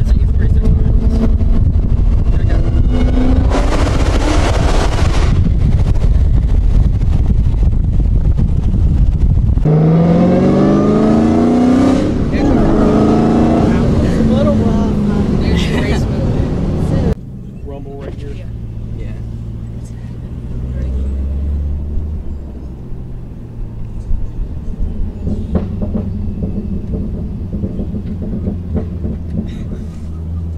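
Inside a sports car's cabin: heavy wind and road noise at highway speed. After a cut about ten seconds in, the engine revs up hard with rising pitch, then after another cut it settles into a quieter low drone at low speed.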